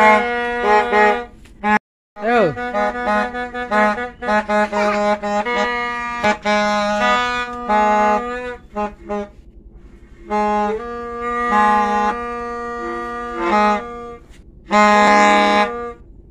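A buzzy, reedy horn plays a tune of short notes that shift between a few pitches, with downward pitch slides near the start. The sound cuts out completely for a moment about two seconds in.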